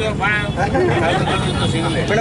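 Several people talking close by in a crowd, over a steady low rumble.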